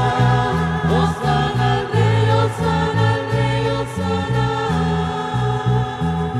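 Church choir singing a hymn with instrumental accompaniment: held chords over a bass line that steps from note to note.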